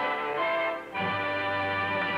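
Orchestral background music holding sustained chords, with a brief dip just before the middle and a new held chord after it.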